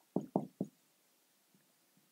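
Three quick, faint knocks within about half a second: a marker striking a whiteboard during writing.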